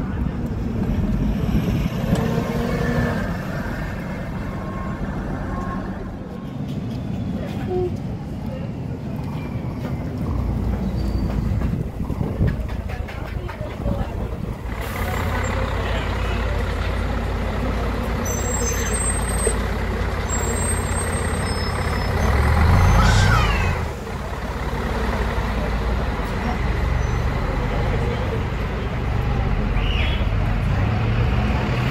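Diesel city buses running and idling close by, with a sudden change in the sound at about 15 seconds. About 23 seconds in comes the loudest moment: a short pneumatic release from a bus.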